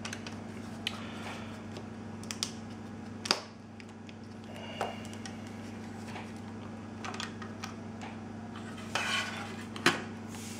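Hard plastic clicks and knocks from handling the housing and backing plate of an LTL Acorn 5210A trail camera: a dozen or so scattered taps, the loudest about three seconds in and a short cluster near the end, over a steady low hum.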